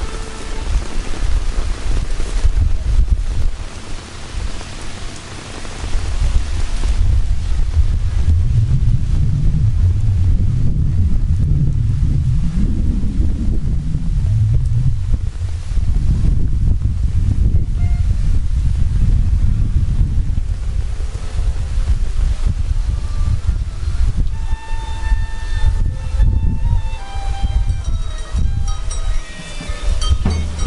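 Heavy rain beating on an umbrella held just over the microphone, a dense low rumbling patter with the rain hissing on the wet pavement around it. From about three-quarters of the way in, a few faint held musical notes come in over the rain.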